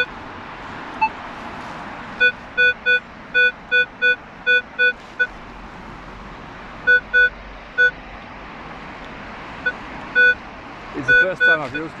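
Metal detector's target tone: short beeps, all at the same pitch, coming in runs of several at about three a second with pauses between. They are the signal of a buried metal target being located.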